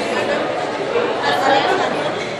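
Several people talking at once in a large room: overlapping chatter of a small group.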